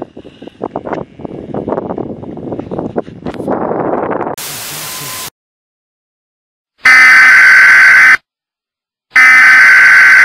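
Loud, harsh electronic buzzer sounding in two long blasts of about a second and a half each, with a brief silence between them. Before it come a few seconds of irregular rustling and then about a second of steady static hiss that cuts off suddenly.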